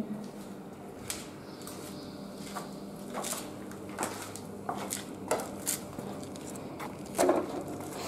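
Footsteps crunching and scuffing over loose rubble and debris on a concrete floor, in irregular scattered steps, with a louder scrape a little after seven seconds.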